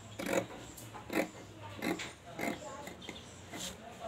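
Scissors cutting through cloth on a tabletop: about five separate short snips, roughly one a second.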